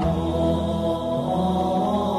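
Slow Buddhist devotional chant set to music, with long held notes. A low droning note comes in at the start.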